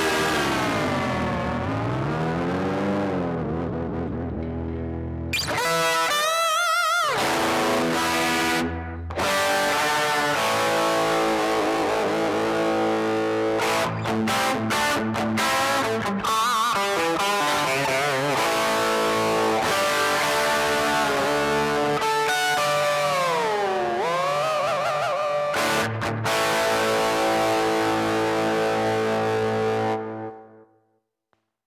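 Electric guitar, a Kramer Pacer Classic, played with its licensed Floyd Rose tremolo arm. The pitch dives and comes back up about two seconds in and again near 24 seconds, with a fast wobble around six seconds. After each dive the notes return to pitch: the tremolo now stays in tune with its new heavier brass block and stiffer springs.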